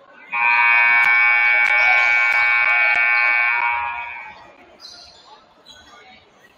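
Basketball scoreboard horn sounding one long, loud blast of about three and a half seconds, then fading, signalling the end of a timeout.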